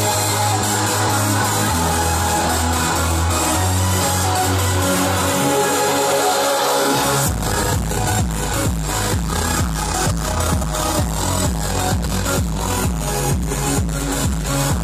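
Electronic dance music from a DJ set played loud over a large sound system: held bass chords, then about seven seconds in a kick drum comes in on a steady beat, about two a second.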